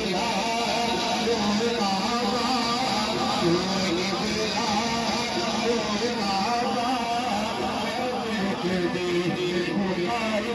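A man singing a devotional qaseeda in Punjabi into a microphone, carried over a loudspeaker system with musical accompaniment; the melody runs on without a break.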